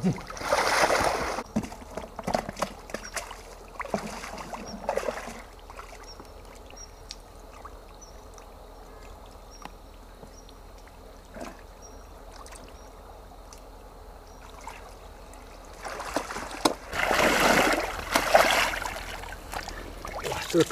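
Shallow muddy pond water sloshing and splashing as a person wades through it and works a net scoop. The water comes in bursts, about a second in, around four to five seconds, and again for a few seconds near the end, with quieter stretches between.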